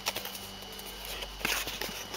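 Faint handling noise: a few soft clicks and light rustles, about two clustered near the start and a small burst around a second and a half in, over a steady low hum.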